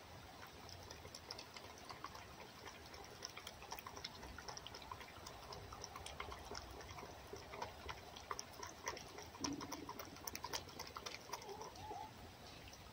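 Red fox eating raw egg from an enamel bowl: faint, irregular small clicks of lapping and licking.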